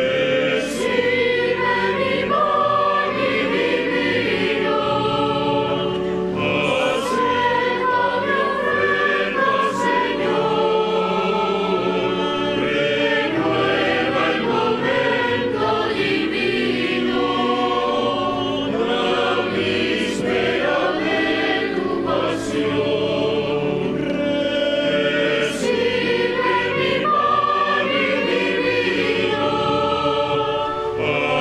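Church choir singing the offertory hymn of a Mass in sustained, changing notes.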